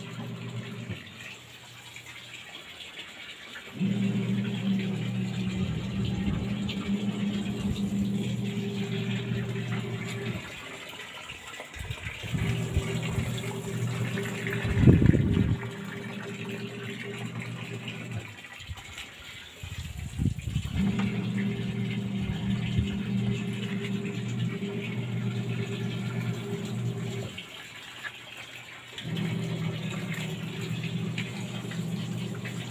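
Washing machine on its wash cycle: a steady motor hum with water sloshing, running for about six seconds at a time and pausing for a second or two as the drum reverses, with a louder splash about fifteen seconds in.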